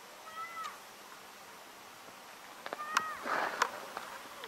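A bird calling twice, with short calls that hold their pitch and dip at the end: one about half a second in, the other about three seconds in. A few sharp clicks and a brief rustle come around the second call.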